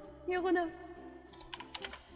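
A short vocal phrase from a woman, then a quick run of computer keyboard keystrokes in the second half.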